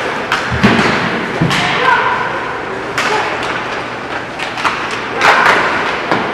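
Ice hockey play in a rink: sharp clacks of sticks on the puck and on each other, with heavy thuds against the boards in the first second and a half, and voices shouting over the play.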